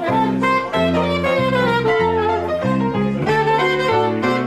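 Small jazz group playing live: a melody line stepping downward over a series of held bass notes, with electric guitar.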